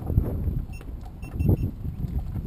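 Wind buffeting an outdoor camera microphone: a low, uneven rumble that swells and fades, with a few faint short high beeps near the middle.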